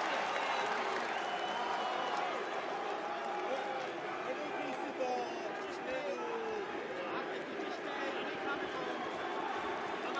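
Steady arena crowd hubbub: many voices blending together, with a few faint individual shouts rising above it now and then.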